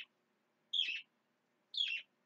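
A bird chirping twice: two short, high calls about a second apart, each sliding down in pitch.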